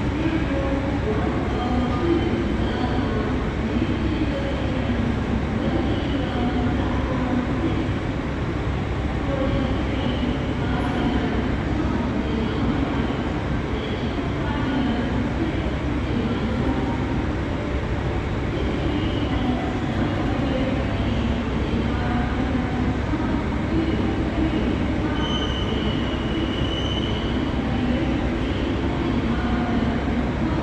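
Steady rumbling din of a railway station platform, with the sound of trains standing at the platforms and brief high squeals now and then, the clearest a little before the end.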